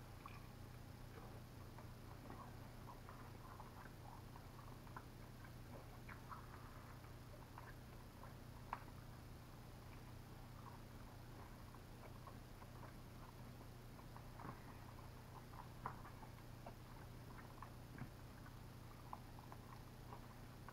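Faint chewing and mouth sounds of someone eating a Buffalo chicken wing: scattered small wet clicks and smacks, a couple a little louder, over a low steady room hum.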